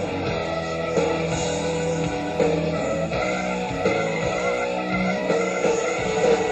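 Live hard rock band playing an instrumental passage without vocals, with sustained, bending distorted electric guitar notes over bass and drums.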